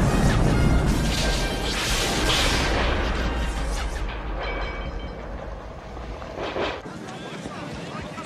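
A large explosion from a film soundtrack as an aircraft blows up. A deep rumbling blast dies away over about four seconds, and a shorter blast or crash comes about six and a half seconds in.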